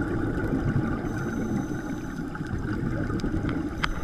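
Underwater sound heard through a camera housing: a steady low rumble of water and scuba regulator exhaust bubbles, with a few sharp clicks near the end.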